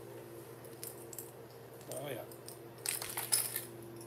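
A few sharp clicks and light rattles about three seconds in, as small hard-plastic fishing lures are set down and knock together on a table, over a faint steady hum.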